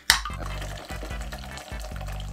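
A can of Pussy sparkling drink is cracked open with a sharp hiss at the start, followed by steady fizzing of the carbonated drink as it begins to be poured into a steel cocktail shaker.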